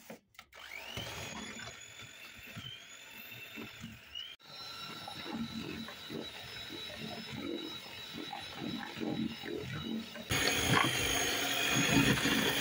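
Fakir electric hand mixer running, its motor whining as the steel beaters whip eggs and butter in a stainless steel bowl. The motor spins up about half a second in, and the sound turns louder and harsher for the last two seconds.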